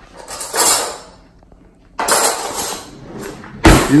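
Kitchen drawer sliding and metal cutlery rattling as a spoon is taken out, in two noisy stretches, then a sharp knock just before the end as the drawer is pushed shut.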